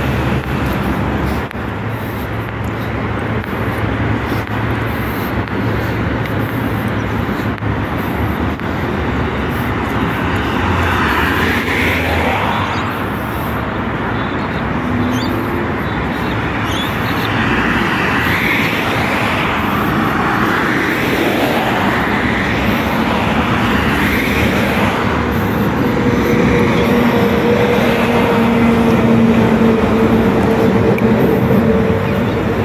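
Loud, steady road traffic noise with several vehicles passing by one after another. A steady hum comes in near the end.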